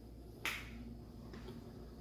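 A single sharp click about half a second in, over faint steady room noise.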